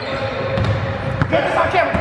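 A basketball being dribbled on a hardwood gym floor, with men's voices calling out over the bounces in the second half.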